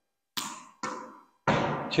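A tennis ball dropped onto a hard indoor court floor and bouncing twice, two short sharp knocks about half a second apart. A man starts speaking near the end.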